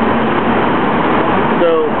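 Steady, dense road traffic noise from a busy city street, with a voice briefly near the end.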